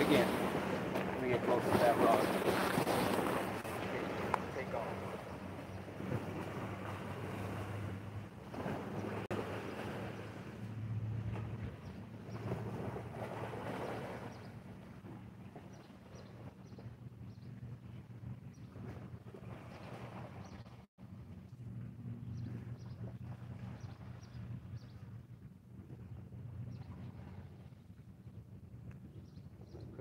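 Wind buffeting the microphone at a riverbank, with a low steady drone underneath; the wind is strongest in the first few seconds and then eases off.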